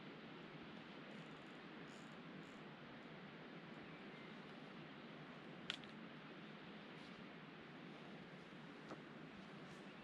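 Near silence: faint steady background noise, with one sharp click about six seconds in and a fainter click near nine seconds as a scoped rifle on a bipod is handled and lifted.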